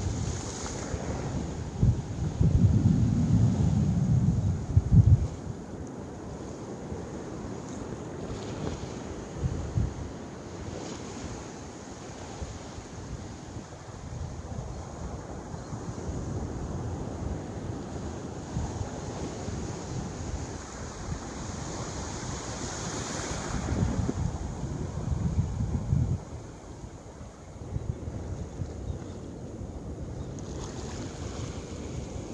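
Surf breaking and washing on a beach, with wind buffeting the microphone. Heavy gusts come about two seconds in and again a few seconds before the end.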